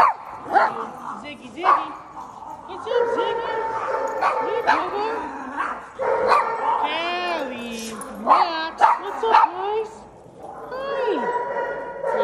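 A group of dogs barking and yipping, with high, rising-and-falling whining calls in between, over a steady drone of continuous whines or howls.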